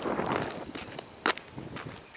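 Footsteps of the person carrying the camera, walking on a paved lane, with one sharp click a little past halfway.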